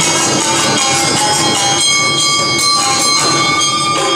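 Live Awa-odori festival music: an ensemble of large barrel drums and a flute, the drums beating a steady driving rhythm while the flute holds a long steady note through the second half.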